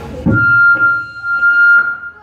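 A low thump, then a single high pitched tone held steady for about a second and a half without wavering, cutting off at the end.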